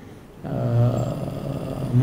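A man's drawn-out hesitation sound, a low, steady 'uhh' held for about a second and a half after a brief pause, mid-sentence in a speech.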